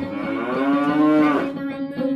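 Cow mooing once, one long moo that rises and then falls in pitch, ending about a second and a half in.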